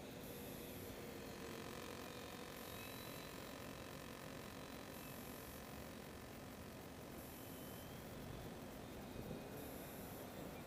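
Faint, steady whine of a ParkZone P-47 RC plane's electric motor flying at a distance, drifting slightly in pitch as it passes, over a background hiss.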